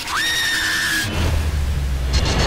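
Horror-trailer sound design: a high shriek that rises sharply, holds for about a second and cuts off, then a deep low rumble takes over.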